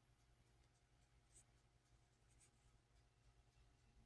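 Near silence: faint room tone with a low hum and a couple of faint, brief clicks.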